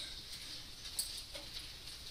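Faint background noise of a classroom after the lecture ends, with a light click about a second in and another soon after.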